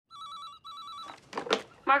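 Office desk telephone ringing: two short bursts of a warbling electronic trill, followed by two brief noisy sounds just before a woman answers.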